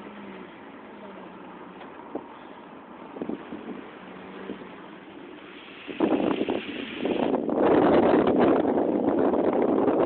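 Low road noise of a slow-moving car with a few small knocks. About six seconds in, wind starts buffeting the microphone and stays loud and rough.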